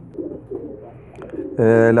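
Pigeons cooing faintly, then a man's voice starts about one and a half seconds in.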